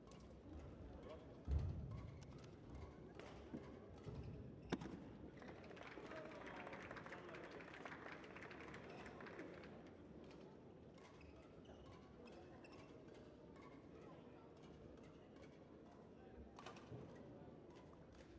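Quiet indoor sports-hall ambience: faint music and murmuring voices, with scattered light knocks and clicks and one dull thud about a second and a half in.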